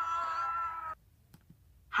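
A drawn-out whining cry held on one wavering pitch, which stops about a second in. It is followed by near silence with a few faint clicks.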